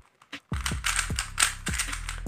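Quick clicking of a Yongjun black-base 3×3 speedcube's plastic layers being turned by hand, over background music with a steady bass. Both start about half a second in. The cube's tension is set loose for easy corner cutting.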